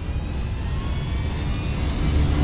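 A low rumbling drone that slowly grows louder, with a faint high tone gliding upward: a suspense riser in the soundtrack.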